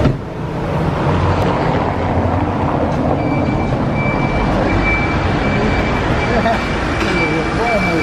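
City street traffic and crowd chatter: motor vehicles running along the road under people's voices. A sharp knock comes at the very start, and a thin steady high-pitched tone sounds from about three seconds in.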